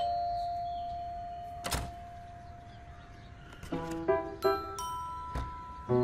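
A doorbell chime rings, its tone held and slowly fading over about three and a half seconds, with a sharp click about two seconds in. Near the end a light, bright melody of chiming notes begins.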